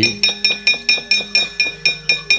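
Wayang kulit kepyak (keprak), the metal plates hung on the puppet chest, struck in a quick even run of ringing metallic clanks, about six or seven a second, over soft held gamelan notes.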